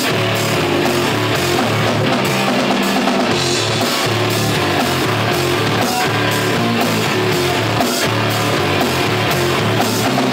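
Rock band playing live: electric guitars and a drum kit in a loud, steady instrumental passage, with no singing yet.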